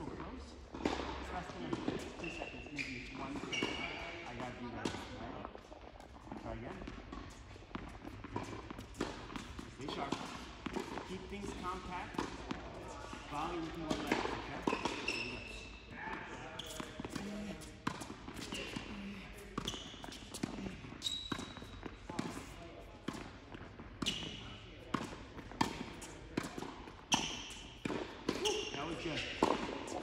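Tennis balls being struck by rackets and bouncing on an indoor hard court: sharp, irregular pops throughout, with voices chattering in the background.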